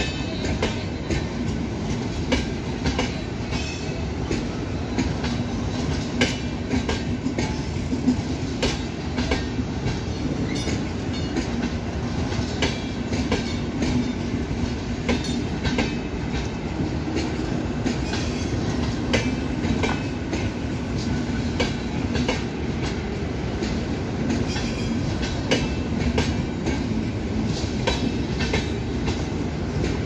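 Long train of air-conditioned passenger coaches rolling past, a steady rumble with frequent sharp clacks as the wheels cross rail joints.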